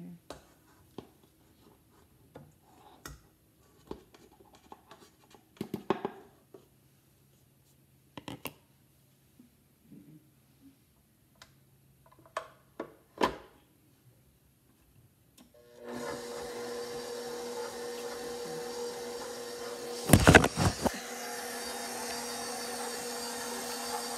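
A few scattered knocks and clicks of handling at the mixer bowl, then a KitchenAid stand mixer switches on about two-thirds of the way in and runs with a steady hum, its beater creaming butter and shortening in the steel bowl. A short burst of loud knocks comes a few seconds after it starts.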